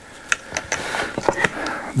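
A string of sharp clicks and light plastic rattles as the detachable front control panel is taken off a Kenwood TM-V71A mobile radio and handled.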